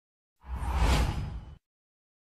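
Whoosh sound effect for a channel logo ident: a single rush of noise with a heavy bass, starting about half a second in, swelling and then fading out after about a second.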